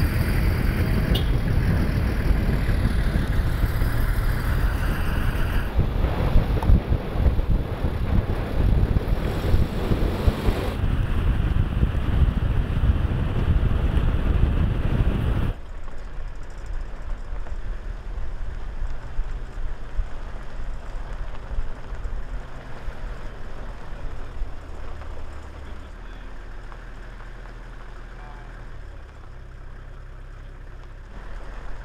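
Loud, steady motor-vehicle engine and road noise for about the first half, then an abrupt drop to a much quieter outdoor ambience with a faint low rumble.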